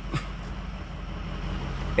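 Steady low drone of a 2005 Ford F-250's 6.0 Power Stroke V8 turbodiesel and road noise, heard inside the cab while driving.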